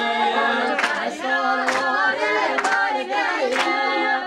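A group of voices singing a melody together, with sharp clap-like beats about once a second.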